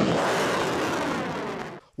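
Rocket-launch sound effect: a steady rushing blast of noise that fades a little and cuts off suddenly near the end.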